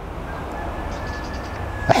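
Steady rushing outdoor background noise, slowly growing a little louder, with a faint thin high tone held for about a second and a half in the middle.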